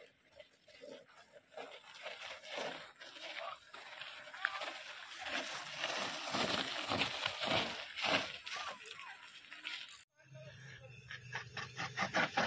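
Mountain-bike tyres crunching and sliding over loose volcanic sand and gravel, growing louder as the rider comes down the slope and pulls up close. The sound cuts off suddenly about ten seconds in.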